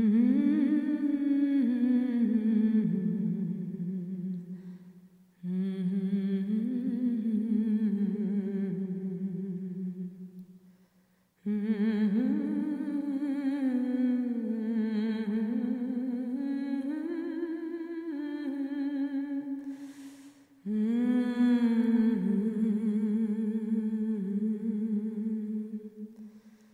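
A wordless voice humming a slow melody in four long held phrases with vibrato, with a short breath just before the last phrase.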